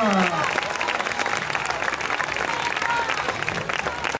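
An outdoor crowd applauding, a steady clapping that follows the end of a stage performance, with a voice trailing off in the first half-second.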